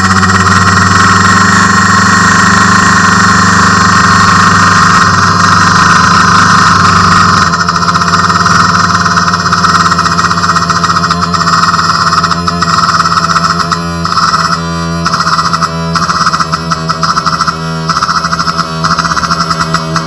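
Loud, distorted electronic synthesizer drone holding one steady chord. It turns choppy, breaking up in quick stutters, in the second half.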